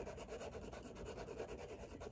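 A handmade Henri Roché soft pastel stick rubbed across grey pastel paper in rapid back-and-forth strokes as a colour swatch is laid down; faint.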